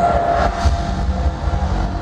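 Loud, steady low rumble played through a concert hall's PA system.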